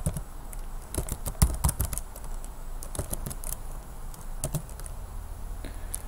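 Keystrokes on a computer keyboard, typed in short irregular bursts of clicks, the loudest about a second and a half in.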